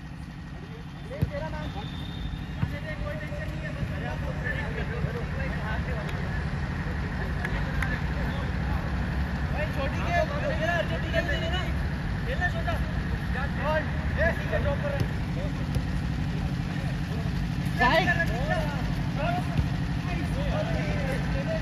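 Players' voices calling out across a small-sided football pitch, over a steady low engine-like hum, with a few sharp knocks of the ball being kicked.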